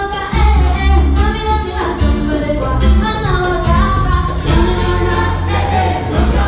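Live Latin dance-band music with a lead vocal over a heavy, pulsing bass line.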